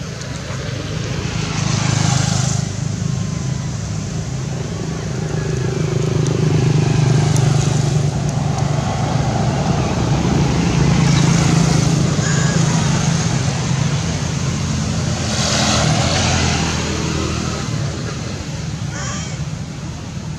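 A motor engine running steadily, louder in the middle and easing toward the end, with two brief rushes of noise, one about two seconds in and one near the end.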